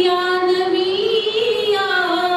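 A woman singing unaccompanied into a microphone, holding long drawn-out notes; the pitch rises slowly after about a second and falls back near the end.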